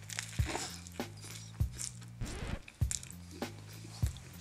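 A person biting into a soft sesame-bun burger and chewing with the mouth close to the microphone: short wet clicks and squishes at irregular moments. Faint steady background music runs underneath.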